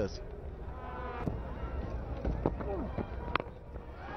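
Cricket ground ambience on a TV broadcast: a low steady crowd murmur with faint shouts. Near the end comes a single sharp crack, the bat striking the ball for a six.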